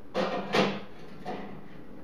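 A perforated metal dipping ladle being set down on a workbench: a few short knocks and clatter, the loudest about half a second in.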